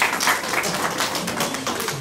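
A small group of people applauding, with many quick, uneven hand claps.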